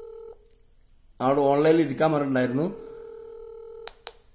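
Ringback tone of an outgoing Botim video call from the phone's speaker: a steady tone of several pitches. It stops shortly after the start, sounds again for about a second near the end, and cuts off with a click as the call is answered.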